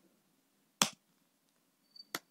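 A single keystroke on a computer keyboard: one sharp click just under a second in.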